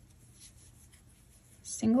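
Faint rustle of bulky cotton yarn being worked through stitches with a crochet hook. A woman's voice starts near the end.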